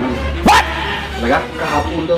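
A dog barks once, sharply, about half a second in, over voices and background music.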